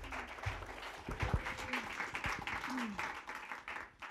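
Audience applauding, with a few scattered voices among the clapping, dying away near the end.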